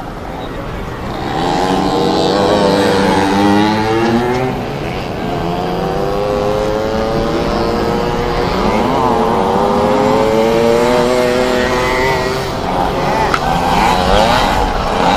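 Several 50cc motocross minibikes revving on a dirt track, their engine notes overlapping and rising and falling in pitch as the riders work the throttle; the engine sound swells about a second in.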